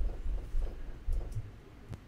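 Low rumbling room noise on a microphone, fading over the two seconds, with a couple of faint clicks a little after the first second.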